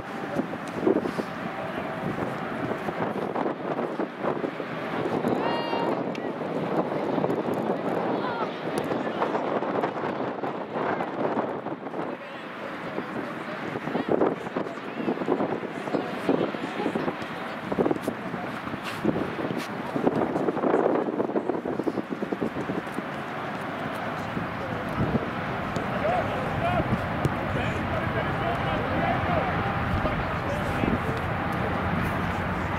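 Distant voices of soccer players and sideline spectators calling out across an outdoor pitch, over a steady rush of wind on the microphone.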